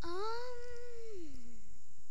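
A single long meow that rises slightly, holds, then slides down in pitch, lasting about a second and a half.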